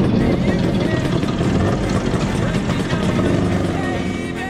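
Motor scooter engines running, with indistinct voices over them.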